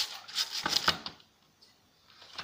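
A few quick scrubbing strokes of a cleaning pad against a Black & Decker belt sander's housing, stopping about a second in.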